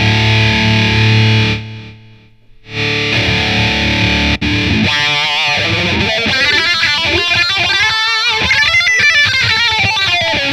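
Ibanez RG seven-string electric guitar played with heavy distortion: held low chords ring, are cut off sharply about two seconds in, and start again. From about five seconds in it plays a fast lead line of single notes with bends and vibrato.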